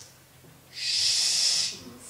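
A person hissing a drawn-out 'shh', about a second long, starting a little before the middle.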